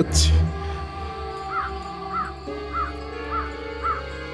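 Background music of sustained tones, opening on a deep low swell, with a bird calling five times over it from about halfway in: short notes that rise and fall, about every half second.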